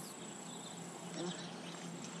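An insect's steady, high-pitched trill, breaking off briefly just past the middle.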